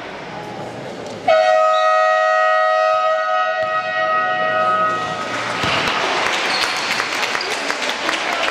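Basketball scoreboard horn sounding one steady, harsh tone for about four seconds, starting about a second in and cutting off near the middle.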